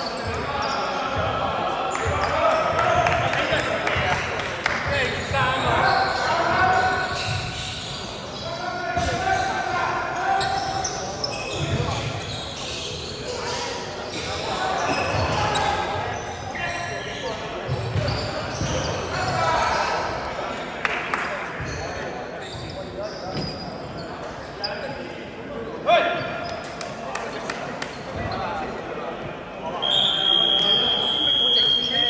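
A basketball bouncing and dribbling during a game, mixed with players' voices calling out on and off, and a sharp knock near the end.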